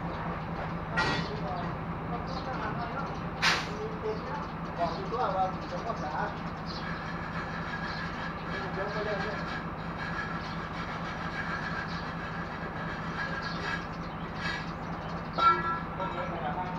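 Sharp metal clanks and knocks as steel pry bars lever a heavy sandblasting machine along the ground, the loudest about a second in, about three and a half seconds in and near the end. A steady low hum runs underneath.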